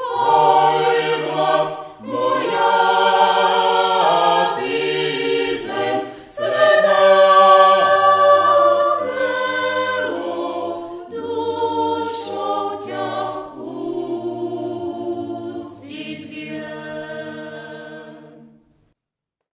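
A choir singing slowly in harmony, several voices holding long notes together, with no instrumental accompaniment heard.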